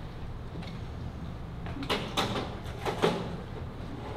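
A few short knocks and thumps on a stage, about two seconds in and again near three seconds, over the low steady noise of the hall.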